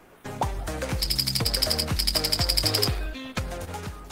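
Short intro jingle for a logo animation: music with bass notes and two fast runs of high ticking beats, about ten a second, in the middle, thinning out near the end.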